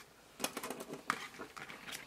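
Small scissors snipping washi tape at the edge of a planner page: a quick run of short, crisp clicks starting about half a second in.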